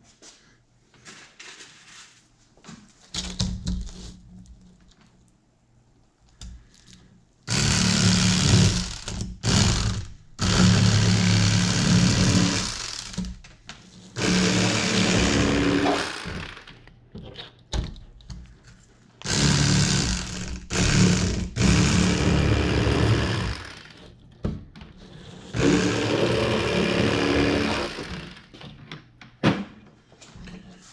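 Corded electric fillet knife buzzing in four runs of a few seconds each as it slices through yellow bass, with small knocks of handling on the cutting board before the first run.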